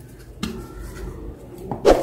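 Handling of a perfboard circuit on a work surface: a light knock about half a second in and a louder, sharper knock near the end.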